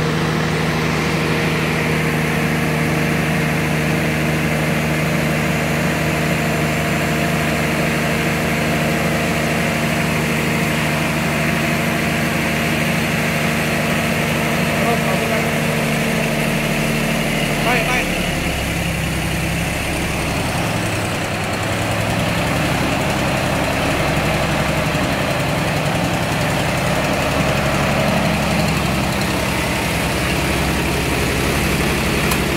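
MWM diesel generator engine running under a salt-water load bank; about two-thirds of the way through, its steady note changes abruptly, with a click. The engine is labouring and sounds close to stalling, a loss of power traced to a restricted fuel supply.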